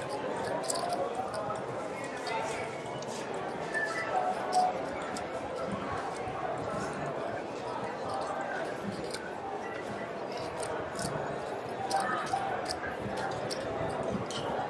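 Clay casino chips clicking against each other as a hand shuffles and handles a stack on the felt, with sharp clicks coming irregularly throughout. Faint voices chattering in the background.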